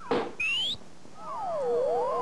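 Electronic sci-fi cartoon sound effect: a short rising whistle, then several wavering tones sweeping up and down across one another.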